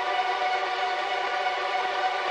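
A sustained electronic synth chord drone, held steady and unchanging, opening the soundtrack.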